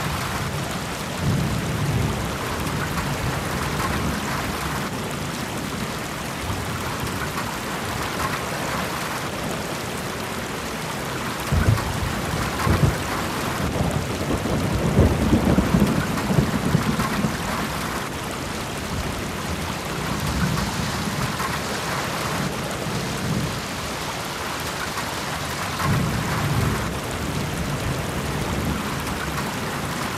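Steady rain-like hiss with low rumbles like distant thunder, the strongest rumbling between about twelve and seventeen seconds in.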